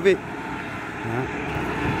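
Road traffic on a highway: the engine and tyre noise of a passing vehicle, a steady rushing that swells slightly about a second in.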